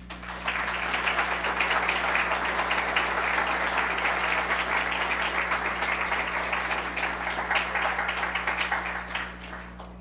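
Audience applauding. The clapping starts about half a second in, holds steady, and dies away near the end.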